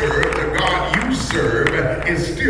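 A voice over music, with scattered hand-clapping, as in a lively church service.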